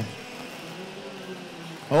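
IAME X30 125cc two-stroke race kart engines running on the circuit, heard faintly as a steady drone.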